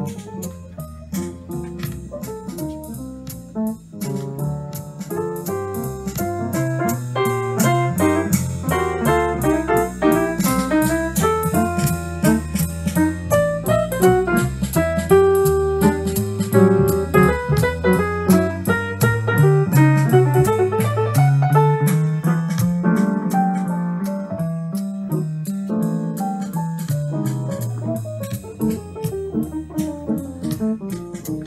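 2003 Yamaha DU1A Disklavier 48-inch upright piano playing back a recorded human performance by itself. Recorded bass and percussion from a speaker play along with the live piano.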